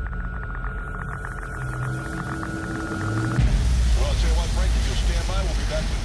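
Soundtrack of a video played over a screen share: music with a voice. The sound changes abruptly about three and a half seconds in and gets louder.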